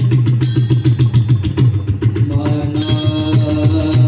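Mridang, a two-headed barrel drum, played with the hands in a quick, dense rhythm with a deep ringing low tone. Steady melodic notes join in a little over halfway through.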